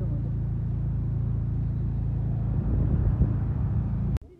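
Motor scooter's engine running steadily at low road speed, heard from the rider's seat with wind and road noise; the sound gets a little louder and rougher about three seconds in.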